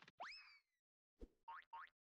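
Faint cartoon sound effects: a quick rising swoop like a boing that then slowly falls, then about a second in a low thump followed by two short rising chirps in quick succession.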